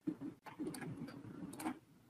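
Faint, scattered clicks of a computer mouse and keyboard, a few sharp ones with softer tapping between.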